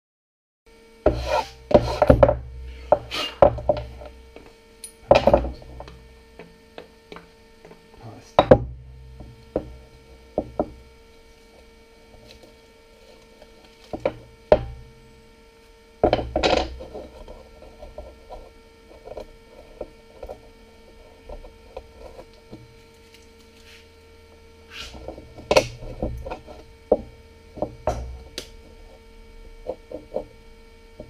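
Plywood boards with cut-out bottle holes knocked, shifted and set down on a wooden workbench: irregular sharp wooden knocks, in clusters near the start, about halfway and near the end. A steady electrical hum runs underneath.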